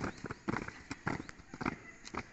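A squad of cadets' boots striking the ground in parade drill: a run of sharp, separate footfalls, a few each second.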